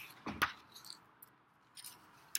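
Paper being handled: a short rustle with a bump about half a second in, then a few faint rustles near the end.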